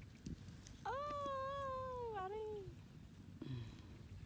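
Baby macaque monkey giving one long, high cry about a second in, lasting nearly two seconds, wavering slightly and falling in pitch at the end.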